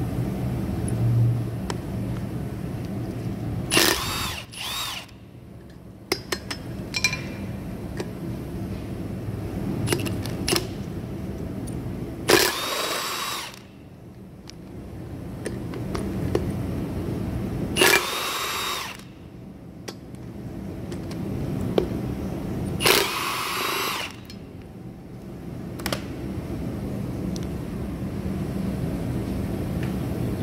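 Cordless battery impact gun running in four short bursts of about a second each, a few seconds apart, undoing the 17 mm bolts on a pickup's front hub and brake disc. A steady low hum runs under it.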